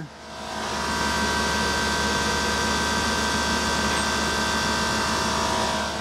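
The 2022 Toyota Tundra's rear air-suspension compressor whirring steadily as it pumps up the rear air springs to lift the truck into high mode. It is an even whir with a few steady tones, building over the first second and then holding.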